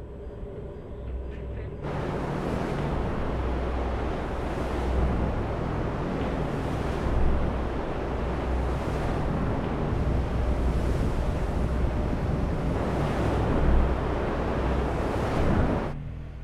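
Human centrifuge spinning: a loud low rumble with a rushing noise over it, swelling in and reaching full strength about two seconds in, then running steadily.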